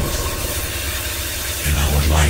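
Electronic dance track in a breakdown: the drums drop out, leaving a sustained low bass under a steady hissing noise wash. The bass swells again near the end.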